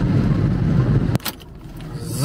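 Opel van driving, a steady engine and road rumble heard inside the cab, which cuts off suddenly a little over a second in. A single sharp click follows, then only faint hiss.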